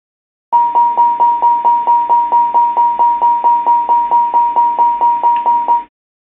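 ATR cockpit warning-system aural alert: a single-pitched chime repeating about four times a second for a little over five seconds, then stopping abruptly.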